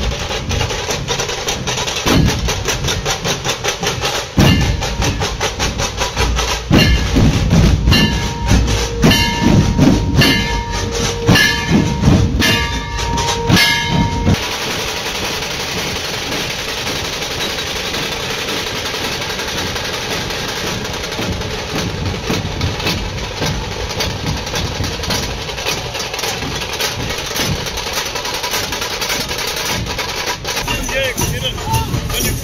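Loud procession drumming, rapid strikes with a long held high tone over them. About halfway through it cuts off abruptly, giving way to a steady noisy din with no drumbeats.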